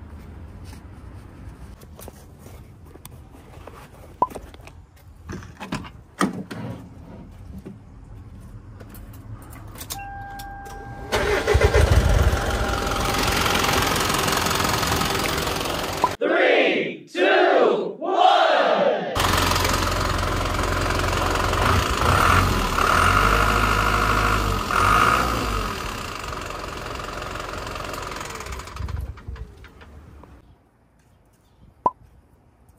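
Hino Dutro small dump truck's diesel engine, started about eleven seconds in and then left running with fresh oil in it, so the oil level can be rechecked. Before it starts there are only faint clicks and handling noises.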